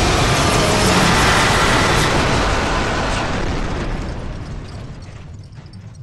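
Loud, explosive rumbling sound effect for spacecraft engines stalling out in the sky, dying away over the last few seconds.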